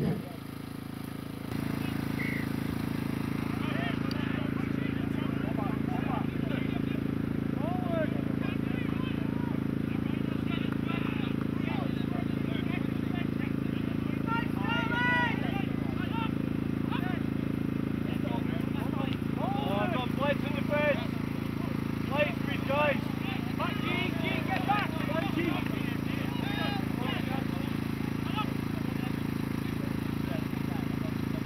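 Rugby players shouting and calling to each other across the pitch, in scattered bursts, over a steady low outdoor rumble.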